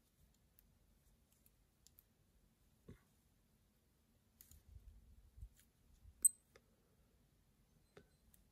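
A few faint clicks from the crown of a Casio MR-G MRG-G1000 watch being turned to set the timer, the loudest and sharpest about six seconds in, with near silence between.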